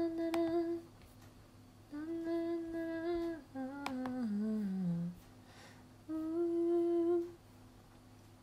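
A woman humming a slow melody: long held notes, with a short falling run of notes about four seconds in. A couple of light clicks sound under it.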